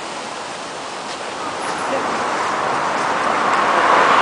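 Steady rushing outdoor ambience, water-like at first. It grows louder through the second half as city street traffic noise builds.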